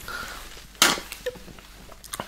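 Close-miked mouth sounds from licking and sucking milkshake off a paper straw: one sharp smack a little under a second in, then a few small clicks.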